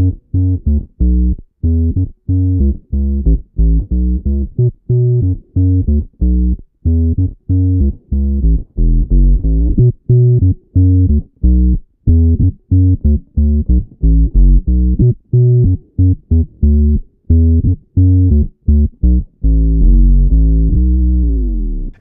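Electric bass played through Boss octave pedals (OC-2 and OC-5) set to the lower octave only with the dry signal off, giving a thick sub-octave tone. It plays a run of short, clipped low notes, two or three a second, and ends on one long held low note near the end. The two pedals sound almost the same on this setting.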